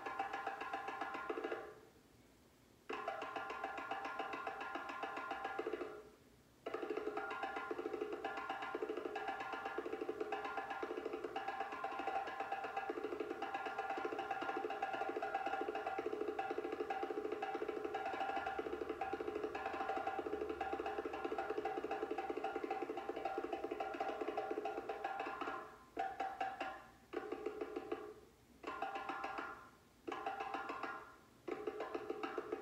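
Recording of a master drummer playing a solo djembe, fast rapid hand strokes in rhythm, played back with little bass. The drumming breaks off briefly about two and six seconds in, then comes in short phrases with pauses near the end.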